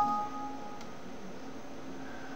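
Windows alert chime as a save-warning dialog pops up: a rising two-note chime whose higher note rings on into the first half second and fades out, followed by a faint mouse click.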